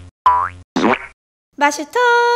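Three short cartoon 'boing' sound effects, each with a quickly rising pitch, one after another in the first second. After a brief pause, a voice starts near the end.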